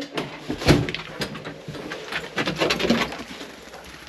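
A back door swinging open and a dog and a person going out onto a wooden porch: irregular footfalls, knocks and clothing rustle, with one sharp knock near the start.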